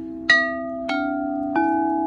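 Frosted crystal singing bowls struck three times with a mallet, about half a second apart, the first strike the loudest. Each strike rings on in long steady tones that overlap the earlier ones.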